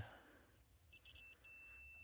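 Multimeter's continuity beeper sounding faintly as its probes touch a turn-signal bulb's contacts: a short blip about a second in, then a steady high beep from about halfway. The beep shows the bulb's filament is intact: the bulb is good.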